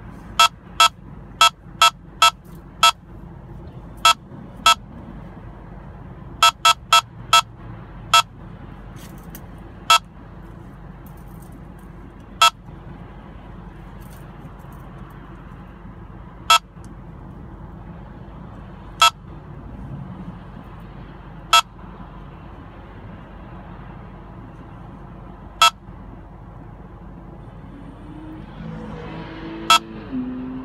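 Escort Passport Max radar detector beeping a K-band alert over steady in-car road noise. The beeps come quickly at first, then slow and spread out to single beeps several seconds apart as the signal weakens.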